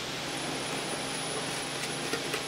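Steady running noise of packaging-line machinery, with a faint high-pitched whine coming in shortly after the start and a couple of faint clicks near the end.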